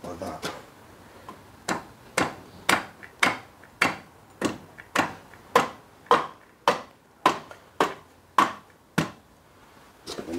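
Cast cylinder block of a Kawasaki ZZR1100 inline-four being knocked down by hand over its pistons: a steady run of about fifteen sharp knocks, roughly two a second, starting a couple of seconds in. The block is going on tight over the piston rings.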